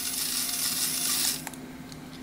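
Toy remote control cobra's built-in hissing sound effect, a steady electronic hiss that cuts off about one and a half seconds in, followed by a couple of faint clicks.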